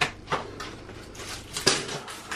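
Kitchen knife cutting through a green vegetable onto a wooden chopping board: a few separate sharp knocks, one right at the start and one near the end.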